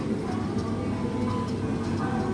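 Steady low hum of supermarket ambience, with faint background music.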